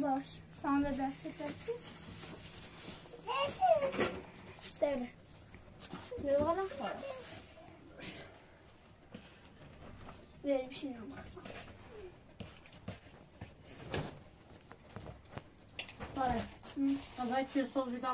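Speech only: short bursts of talk from women and a child in a small room, with one sharp click about two-thirds of the way through.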